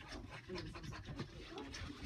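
Glue being stirred on a plate with a fork: a quick run of soft, scratchy scraping strokes.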